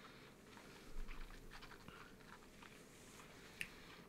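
Faint mouth sounds of a man sipping whisky from a nosing glass and working it around his mouth, with a small sharp click near the end.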